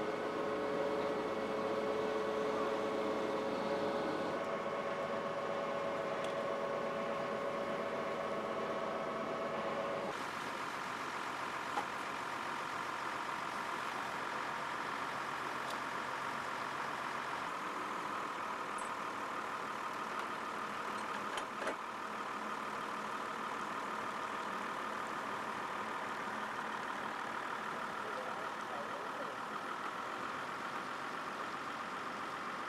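A heavy recovery truck's engine running steadily while its crane lifts a car. The engine note changes about ten seconds in, and there are a couple of short knocks later.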